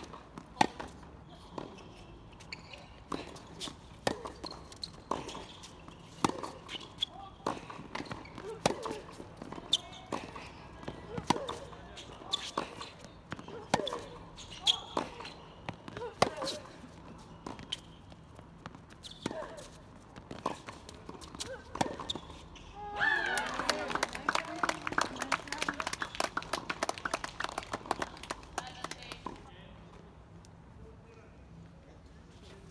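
Tennis rally: irregular sharp pops of racket strikes and ball bounces, with players' footsteps on the court. Near the end, several seconds of voices talking.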